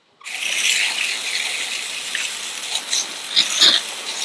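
Pistol-grip garden hose nozzle spraying a hard jet of water onto a hand-held reef fish to blast off its scales. It makes a steady hiss that starts just after the beginning, with brief spatters near the end.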